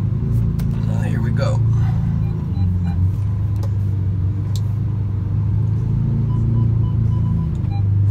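Lamborghini Aventador's V12 engine running at low revs, heard from inside the cabin as the car creeps forward in gear: a steady low drone whose pitch drops slightly about two and a half seconds in.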